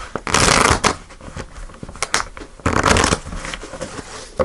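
A deck of tarot cards being shuffled by hand: two loud rustling bursts of about half a second each, near the start and about three seconds in, with a few light card clicks between them.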